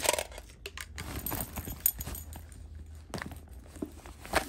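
Hands rummaging inside a leather tote bag: irregular rustling with scattered small clicks and knocks as items are handled. The loudest sounds are a brief burst right at the start and a sharp click about two seconds in.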